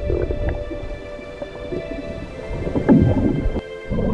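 Low rumbling and crackling water noise picked up by an underwater camera, under background music with long held notes. The sound dips briefly near the end, where the picture cuts.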